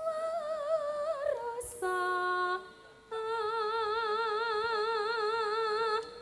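A woman singing solo into a microphone in Javanese sinden style, holding long notes with a wide, even vibrato. The pitch steps down about a second in, and from about three seconds in she holds one long note to the end.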